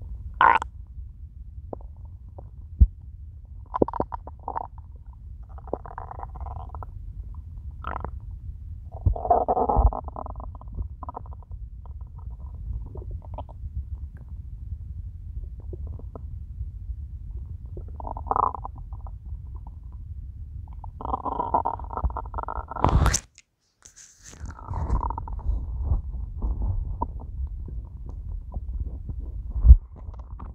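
A hungry person's stomach growling and gurgling, recorded close up: a constant low rumble with gurgles rising over it every few seconds. About 23 seconds in there is a sharp knock and a second of silence before the gurgling resumes.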